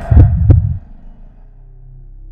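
Two deep bass thuds about a third of a second apart, then a low hum that slowly fades: the sound-design hit of an animated logo intro.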